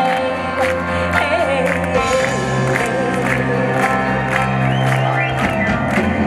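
Loud live music from an orchestra and choir, with singing over sustained chords and a regular beat.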